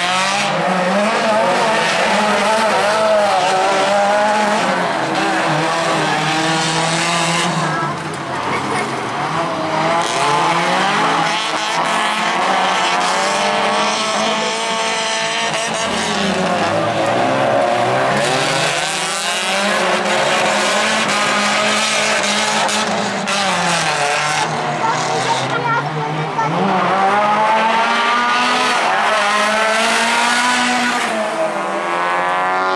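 Small hatchback autocross race cars running flat out, several engines revving hard, their pitch rising and falling again and again through the lap.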